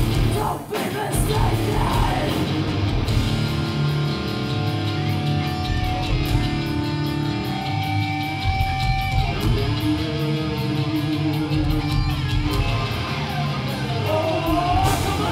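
Live hardcore band playing loud: distorted electric guitars, bass and drums, in a stretch without vocals where the guitars hold long sustained notes. The sound dips for a moment just after the start.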